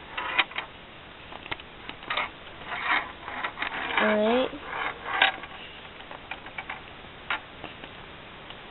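Small steel ball rolling and clicking along the plastic tracks inside a Perplexus Rookie maze sphere as it is turned, with irregular taps and rattles. A short hummed vocal sound comes about four seconds in.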